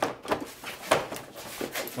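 Hard plastic console panel of a snowmobile being pushed and seated by hand: a scatter of clicks and knocks as it goes into place, the loudest about a second in.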